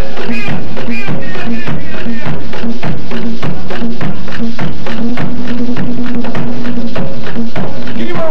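Live mapalé music: an Afro-Colombian drum ensemble playing a fast, driving rhythm of hand-drum strokes over a steady held tone.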